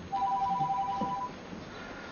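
Mobile phone ringing with an incoming call: a trilled electronic ring of two tones sounding together, lasting about a second.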